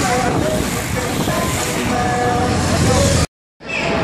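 Street bike race ambience: a bunch of racing cyclists passes close by over steady crowd noise, with a public-address voice in the background. The sound drops out for a moment near the end.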